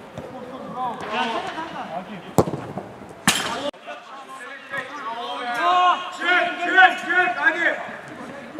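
Men shouting across an outdoor football pitch, loudest in the second half. A single sharp thump of the ball being struck comes a little over two seconds in, followed by a brief rush of noise that cuts off suddenly.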